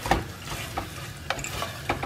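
Wooden spatula stirring cooked black rice in an aluminium pressure cooker, making a few irregular scrapes and knocks against the pot, over a faint sizzle of ghee heating in a small pan.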